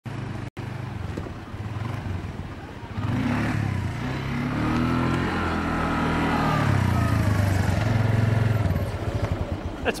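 Quad bike (ATV) engine running as it is ridden over sand, its pitch rising about three seconds in and easing back down a few seconds later.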